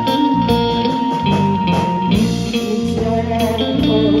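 Live band playing an instrumental stretch of a pop song: electric guitar to the fore over bass and drum kit, with one long held high note through the first half.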